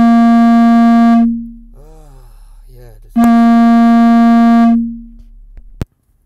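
Two loud, held electronic notes at the same pitch, each starting abruptly, lasting about a second and a half and then fading. A short, quieter voice-like sound comes between them, and a single click comes near the end.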